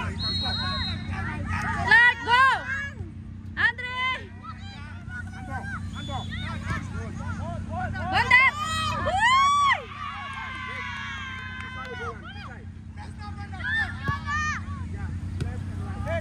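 Players' high-pitched shouts and calls carrying across the pitch in short bursts, loudest about eight to ten seconds in, over a steady low background hum.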